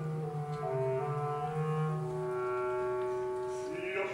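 Opera orchestra's wind instruments, clarinets and brass, holding soft sustained chords that shift note by note between sung phrases. Voices come back in just before the end.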